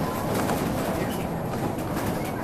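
Interior running noise of a Wright Solar single-deck bus on the move: a steady low drone from the engine and ZF automatic gearbox, mixed with road noise and a few short rattles from the door area.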